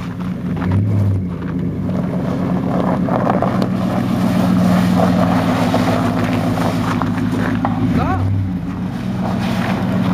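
Ford Expedition's V8 engine running at low revs as the SUV backs slowly through snow on chained tyres, a steady low hum that swells a little in the middle.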